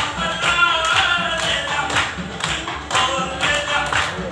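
Dance song with a sung vocal over a steady beat, about two beats a second.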